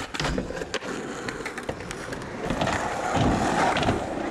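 Skateboard on a concrete skatepark: a few sharp clacks of the board in the first second, then the wheels rolling over the concrete, getting louder toward the end.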